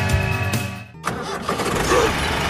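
Background music ends about a second in. An engine-like running sound for the toy tractor takes over, a rough low rumble.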